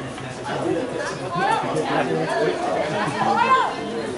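Several people talking over one another near the microphone, with one voice rising louder a little after three seconds in.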